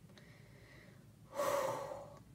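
A person's sharp, audible intake of breath, about half a second long, coming about a second and a half in.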